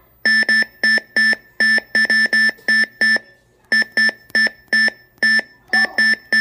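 OP-1 synthesizer sounding short beeping synth notes, all at one pitch, about three to four a second. Each note is triggered by a press of the Teenage Engineering Poke pressure sensor through the Oplab's gate input, and there is a break of about half a second around the middle.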